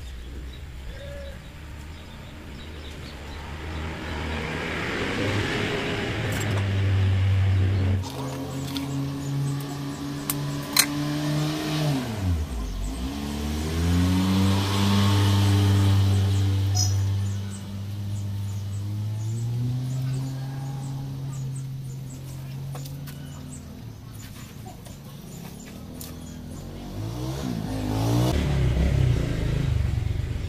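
A motor vehicle's engine running nearby. Its hum builds over several seconds, drops sharply in pitch and recovers about twelve seconds in, then holds before fading. Another engine sound swells near the end.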